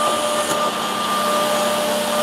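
Automatic edge banding machine running at the corner trimming units: a steady mechanical whir with a constant high whine, and a faint click about half a second in.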